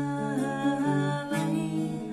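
A woman singing slow, long-held notes, starting on an "oh" and moving through a few sustained pitches, accompanied by acoustic guitar.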